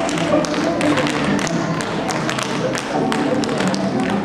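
Several dancers' tap shoes striking a stage floor in many quick, irregular clicks, over backing music.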